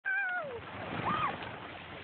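A high-pitched vocal cry that falls steadily in pitch, then about a second in a shorter cry that rises and falls.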